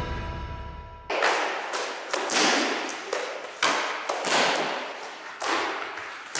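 Theme music cuts off about a second in. It is followed by taekwondo kicks and strikes, about six sharp thuds spread over the next five seconds, each ringing on in the echo of a large gym hall.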